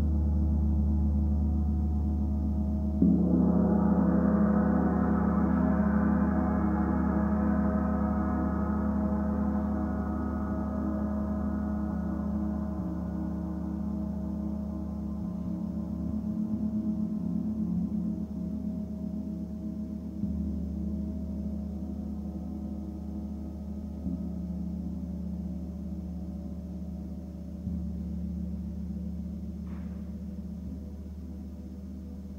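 Large gong played with a soft mallet, ringing continuously with many overtones. A harder stroke about three seconds in brings in brighter, higher overtones that slowly die away, and lighter strokes come near the end.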